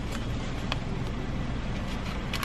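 Car engine idling, heard from inside the cabin as a steady low hum, with a faint click under a second in.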